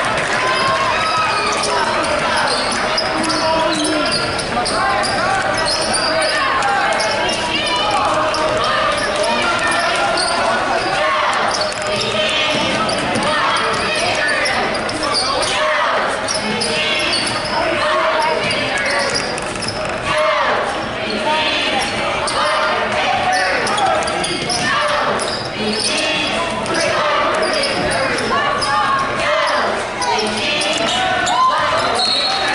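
Basketball game play in a gym: a basketball dribbled on the hardwood floor, over continuous overlapping crowd and player voices that echo in the hall.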